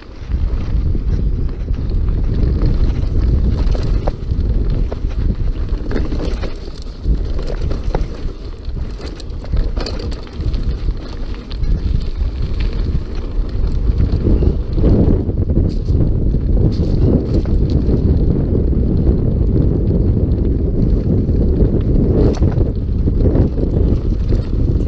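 Wind buffeting the action camera's microphone as a mountain bike rolls fast down a dirt trail, with tyres crunching over dirt and gravel and scattered clicks and knocks from the bike rattling over bumps. The rumble comes up sharply just after the start and stays loud.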